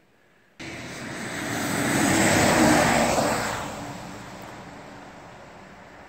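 A road vehicle passing on a highway: tyre and engine noise that starts abruptly about half a second in, swells to a peak two to three seconds in, then slowly fades as it drives away.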